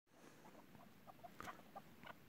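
Faint series of short clucking partridge calls, several notes a second at uneven spacing.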